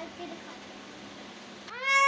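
A young child's high-pitched, drawn-out vocal call starts suddenly near the end and is the loudest sound. Before it there is only faint sound.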